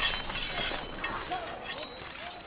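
A sudden noisy crash that hits at the start and fades out with a hiss.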